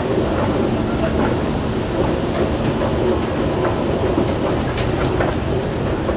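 Escalator running, a steady mechanical rumble from the moving steps and drive.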